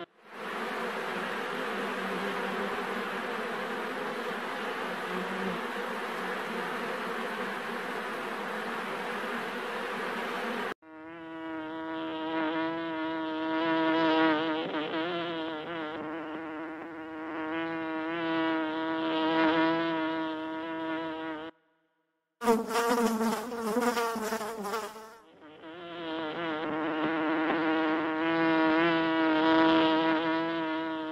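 Honey bees buzzing, in several recordings cut together. First comes a dense, even hum of many bees. After an abrupt change about a third of the way in, it becomes a steadier buzz with a clear drone note that wavers up and down. The sound cuts out completely for about a second near the two-thirds mark, then the buzzing returns.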